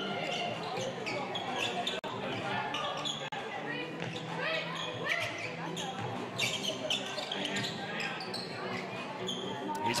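Court sound of a basketball game in a large indoor hall: a basketball bouncing on the hardwood floor through a half-court possession, with players' calls and scattered crowd voices echoing around it.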